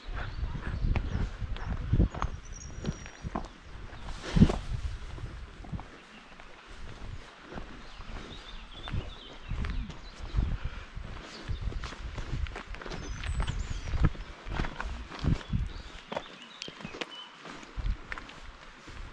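Footsteps walking along a dirt forest path, heard close as an irregular run of low thuds and knocks, with one sharper knock about four seconds in. A few faint high chirps come through now and then.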